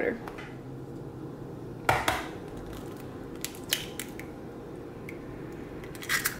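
Quiet kitchen handling over a low room hum: a knock about two seconds in, then a few light taps as an egg is cracked into a mixing bowl.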